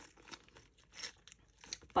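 Small clear plastic bag crinkling and rustling in the fingers in short, faint bursts, a little louder about a second in.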